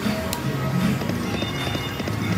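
Video slot machine's electronic game music and chiming tones as a spin is played, with a rhythmic clacking and a sharp click about a third of a second in.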